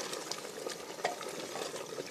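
Wooden spoon stirring potatoes and goat meat in an aluminium pressure cooker as they sauté, the curry sizzling, with scraping and small knocks of the spoon against the pot; one sharper knock about a second in.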